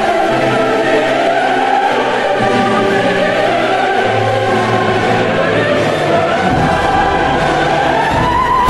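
Choral music: a choir singing long held chords at a steady level.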